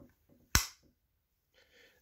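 The door latch of a Covetrus TRI-IPV21 Pro IV infusion pump snapping open as its handle is pulled: one sharp plastic click about half a second in.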